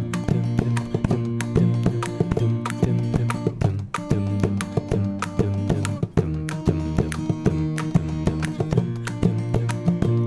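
Instrumental passage of a song: several layered acoustic guitar parts picking and strumming together, with many sharp plucked note attacks and no voice.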